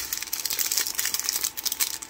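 Small clear plastic bags of diamond-painting drills crinkling as fingers handle them, a continuous fine crackle.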